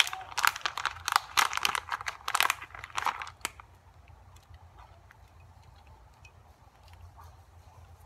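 Crinkling and crackling of a plastic package as bacon bites are taken out by hand and sprinkled over cheese-topped potatoes. There are quick, busy crinkles for the first three and a half seconds, then only faint scattered ticks.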